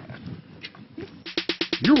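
About a second of faint room tone, then a rapid, even run of sharp clicks, about fifteen a second for half a second, opening a TV station ident, with the announcer's voice just starting at the end.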